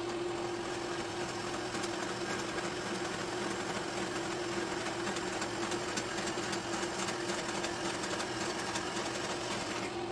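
Delta vertical bandsaw running with a steady hum, its blade cutting through a small piece of stock fed by hand, with a fine ticking from the cut.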